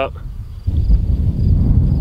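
Wind buffeting the microphone: a loud, even low rumble that starts about two-thirds of a second in.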